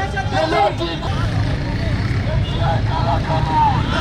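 Marching protest crowd: scattered men's voices calling out over crowd babble, with a steady low rumble underneath.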